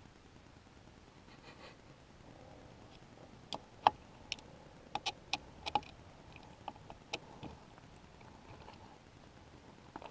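A scatter of small, sharp clicks and taps from a screwdriver and multimeter probes working on the throttle position sensor of a quad with its engine off. About ten clicks fall in the middle of the stretch, with quiet between them.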